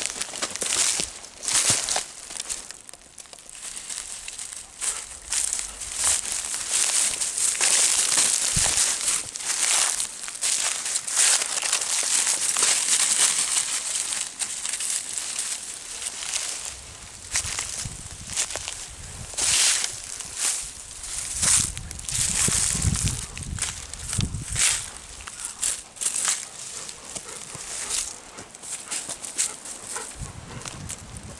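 Dry leaves, twigs and undergrowth rustling and crunching under the paws and muzzles of two golden retrievers foraging, and under the steps of a walker, in an irregular run of crackles and crunches.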